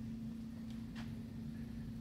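A steady low hum holding one constant pitch, with a faint click about a second in.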